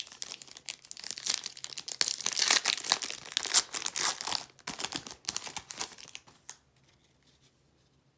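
Foil trading-card pack (2018-19 Panini Prizm) being torn open and crinkled in the hands, a dense crackling that is loudest about two to four seconds in and dies away a little before the end.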